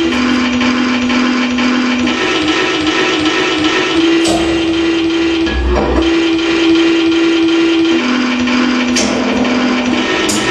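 Live electronic noise music: a loud, dense wall of hiss and buzz with a held low drone note that switches between two pitches every couple of seconds. A few sharp clicks and one low thump about halfway through cut through it.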